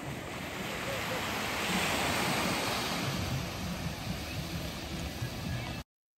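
Ocean surf washing onto a sandy beach, swelling as a wave breaks about two seconds in and then easing back. The sound cuts off suddenly just before the end.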